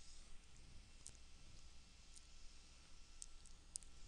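A few faint computer mouse clicks over near-silent room tone: about five short clicks, spaced a second or so apart at first, then three in quick succession near the end.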